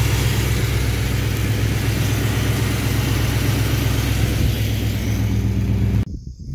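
V8 engine with a Carter Thermoquad four-barrel carburetor idling steadily at about 970 rpm, its idle mixture just set with a vacuum gauge.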